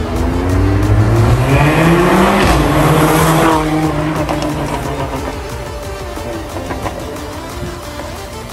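Mercedes-AMG A45's turbocharged four-cylinder, fitted with a stage 2 downpipe, accelerating hard away: the engine note climbs for about two and a half seconds, levels off, then fades as the car pulls into the distance.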